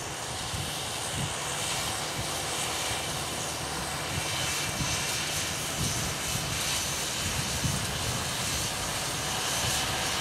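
John Deere 7530 tractor's six-cylinder diesel engine running steadily under load while pulling a John Deere 750A seed drill through the soil, growing a little louder toward the end.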